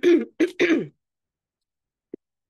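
A woman clearing her throat, three short bursts within the first second, the last one falling in pitch.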